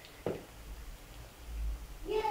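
A silicone spatula stirring thick cream sauce in a frying pan, faint and soft. A low bump about one and a half seconds in is the loudest moment.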